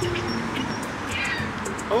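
Birds calling, short pitched calls and quick glides, over a steady low background hum.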